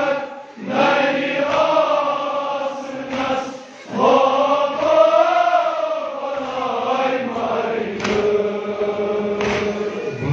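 Men's voices chanting a noha, a Shia mourning lament, in long drawn-out sung phrases. The chant breaks off briefly about half a second in and again just before four seconds in.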